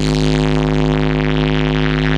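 Loud DJ dance music from an outdoor sound system: the melody breaks off suddenly into a long held chord over a deep, steady bass drone, with no beat.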